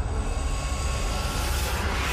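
Steady loud rumbling noise with a deep hum underneath and a hiss across the whole range, swelling slightly in the upper range near the end.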